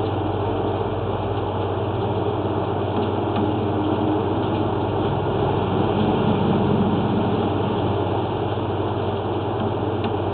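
Steady engine-like drone with a strong low hum and a noisy hiss above it, holding level with no breaks.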